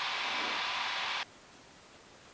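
Steady hiss on the cockpit headset intercom line, left open just after a spoken callout, that cuts off abruptly about a second in and leaves only a faint hiss: the intercom squelch closing.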